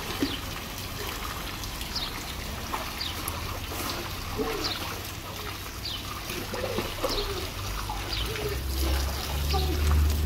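Swimming-pool water trickling and lapping as a dog and children move through it, with short falling bird chirps about once a second. A low rumble comes in near the end.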